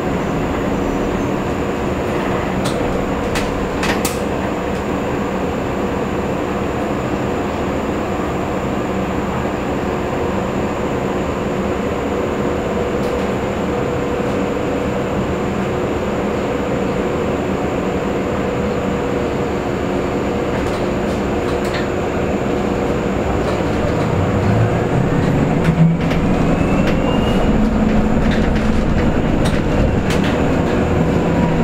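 Cabin sound inside a KAMAZ-6282 electric bus: a steady hum with several whining tones, and a few clicks in the first four seconds. From about 24 seconds in, the electric drive's whine rises in pitch and the sound grows a little louder as the bus picks up speed.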